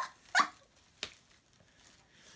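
A girl laughing in two short bursts, then a single sharp click about a second in.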